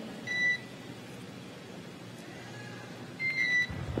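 Short electronic beeps on a mission radio communications loop: one beep about half a second in and a two-note beep near the end, over a steady low hiss of the radio channel.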